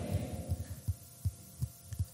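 Faint low thumps at a steady beat, about three a second, with the tail of an echo dying away at the start.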